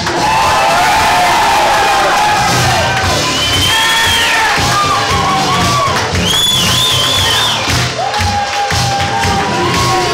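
A crowd of guests cheering and whooping, with clapping, over loud music with a steady beat. Shrill rising-and-falling whoops stand out twice, around the middle.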